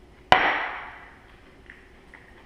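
A drinking glass set down hard on a granite countertop: one sharp clack about a third of a second in, with a short ring that fades away.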